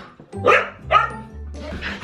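A dog barking twice, about half a second apart, over background music with a steady low bass line.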